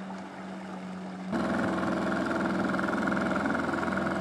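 Outboard motor of a small police patrol boat running steadily. It starts as a faint hum, then turns suddenly louder and fuller about a second in.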